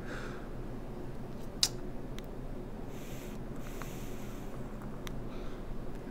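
Air conditioner whooshing steadily in a small room, with a single sharp click about one and a half seconds in and a brief soft rush of air around the middle.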